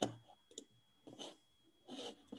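About four sharp clicks, unevenly spaced roughly half a second apart, from someone working a computer's keys or mouse, over a faint steady high-pitched whine.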